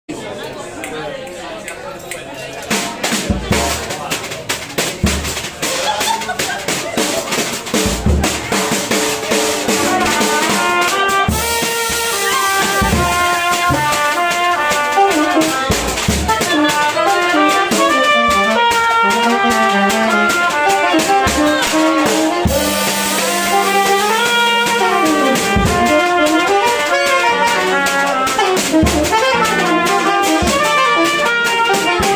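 Jazz combo playing a fast swing tune, the drum kit loud and close with quick cymbal and drum strokes from about two seconds in. Trumpet and tenor saxophone take up a fast melody from about ten seconds in, over piano and double bass.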